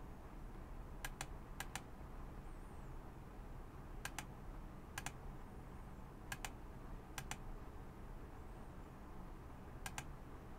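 Faint, sparse clicking at a computer while photos are edited: about seven clicks at uneven intervals, each a quick double tick, over a low steady background hum.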